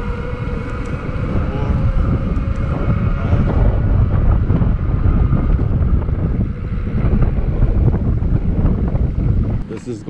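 Wind rumbling over the microphone on a moving bicycle, with the steady whine of a Bafang BBS02 750 W mid-drive motor running at pedal assist level three. The whine fades out about four seconds in, and the wind noise grows louder.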